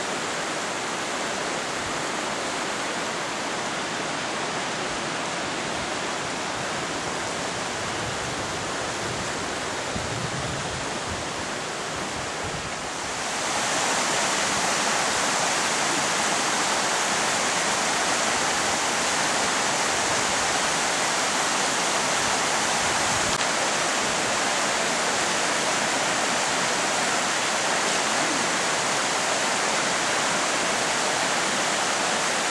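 Rushing water of the swollen Dunajec river, a steady roar of fast-flowing water that turns louder and hissier a little under halfway through.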